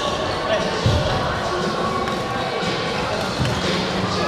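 Badminton being played in a large hall with a wooden court floor: a few low thuds of players' feet on the floor and sharp racket hits on the shuttlecock, about a second apart, over a steady echoing chatter of many voices.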